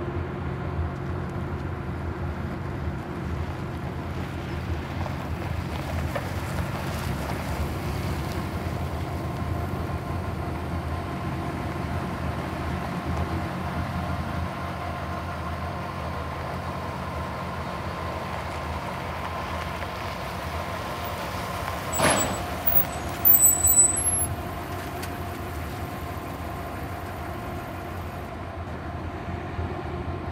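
Pickup truck engine running steadily as the truck drives around a dirt lot. About 22 seconds in there is a sharp click, followed by a few loud knocks.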